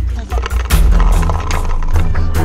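Background music with a heavy bass line and a steady beat, growing fuller about three-quarters of a second in.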